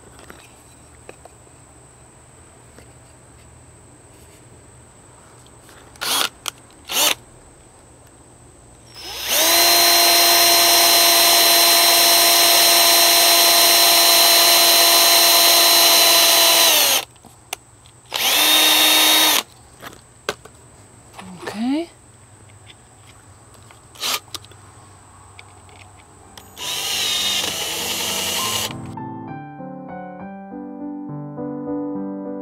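Cordless drill driving drywall screws into thin wooden planks: two knocks, then one long steady run of about eight seconds, a shorter run of about a second, a brief rev, and a noisier burst near the end. Piano music comes in at the very end.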